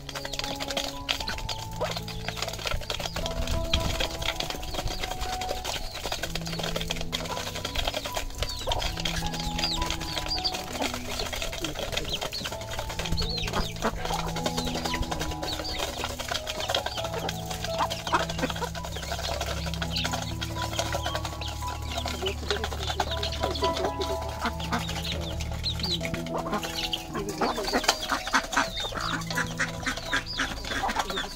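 Background music with slow, held melody notes, over chickens and ducks feeding from a metal pan: many quick beak taps on the pan and chickens clucking.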